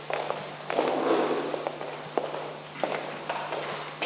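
Footsteps and small knocks of people moving about a room, with rustling, over a steady low hum.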